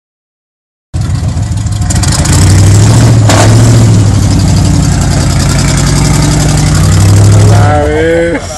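V8-engined Jeep Wrangler running hard under load as it climbs a steep rocky slope, starting suddenly about a second in and holding a steady, loud engine note. A single sharp knock stands out about three seconds in.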